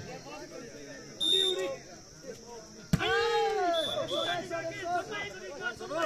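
A short blast on a referee's whistle about a second in and another near four seconds. Between them, a single sharp smack of a volleyball being struck, followed at once by players and spectators shouting.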